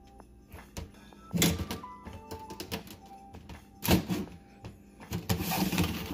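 Two loud knocks, about a second and a half in and about four seconds in, over faint background music with steady notes; rustling handling noise comes in near the end.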